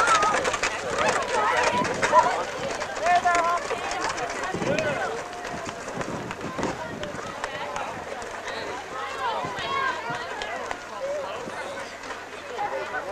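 A group of people talking over one another, with no single clear voice. Louder for the first four seconds or so, then quieter.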